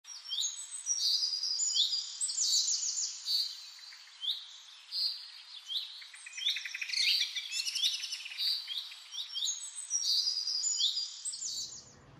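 Several birds singing and calling over one another: repeated short, high chirps with quick trills among them, stopping just before the end.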